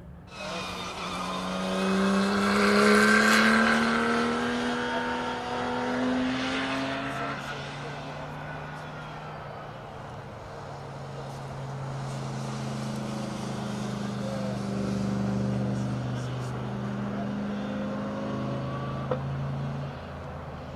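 Race car engines: one accelerates with a rising pitch over the first several seconds, loudest about three seconds in, then more engines run at steadier pitch through the second half.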